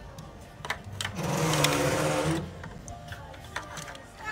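A brief electric buzz from a small gadget, starting about a second in and lasting just over a second before it cuts off.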